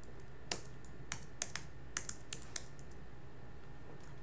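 Computer keyboard typing: about ten separate keystrokes at an uneven pace, stopping about three seconds in.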